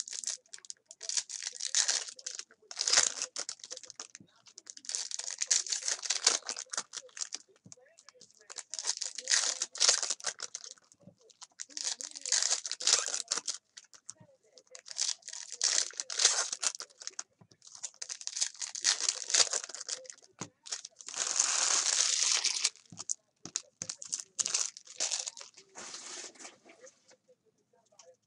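Foil wrappers of 2017 Bowman Chrome baseball card packs being torn open and crinkled, in bursts of crackling every couple of seconds with short pauses between.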